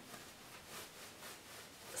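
Faint soft rustling of polyester fiberfill stuffing being pushed and packed by hand into a fabric balloon.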